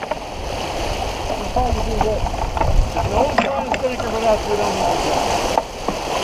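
Water rushing and splashing along the hull of a sailboat moving under sail, a steady wash without a beat.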